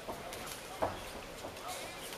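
Spectators shouting and calling out at a kickboxing fight, over a noisy arena background, with one sudden loud sound just under a second in.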